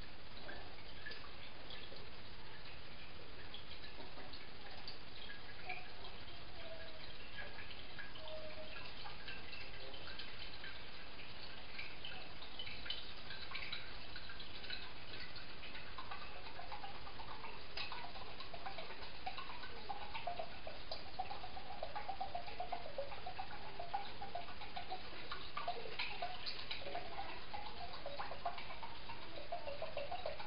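Liquid poured in a thin stream from a can into a stoneware slow-cooker crock, trickling and dripping steadily. From about halfway the trickle grows stronger, with more wavering, pitched splashing.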